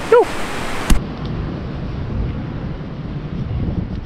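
A click about a second in, then a steady rushing noise of wind on the microphone and white water pouring through a canal spillway.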